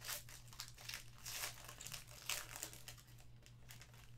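Gold foil trading-card pack crinkling and tearing as it is peeled open by hand, in faint, irregular crackles.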